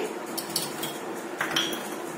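A few light clicks of kitchenware being handled, with one short ringing clink like glass about a second and a half in, over a faint steady hum.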